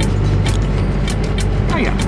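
Steady low rumble of a Fiat Ducato camper van's engine and tyres, heard from inside the cabin while driving, with a regular tapping about twice a second. A voice breaks in briefly near the end.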